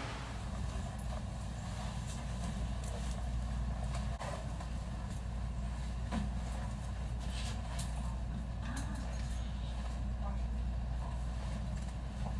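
A steady low rumble with scattered light clicks.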